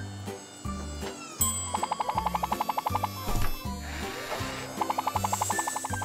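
Light cartoon background music with a pulsing bass line. Twice, a quick run of rapid, evenly spaced clicks like a ratchet sounds over it: about two seconds in, lasting a second and a half, and again near the end.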